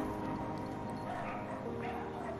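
Dogs yipping and whimpering faintly over soft background music of held chords; the chord changes near the end.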